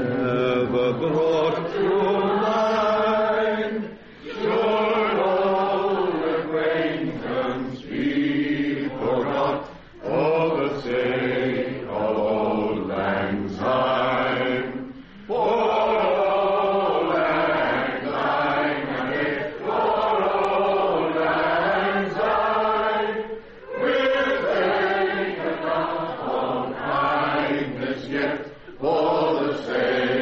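Several men singing a song together, in long phrases with a few brief pauses.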